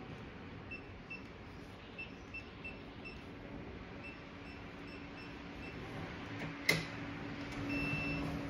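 Electronic door-lock keypad beeping as a PIN code is keyed in: about ten short, high beeps at irregular intervals. Then a sharp click and one longer beep near the end.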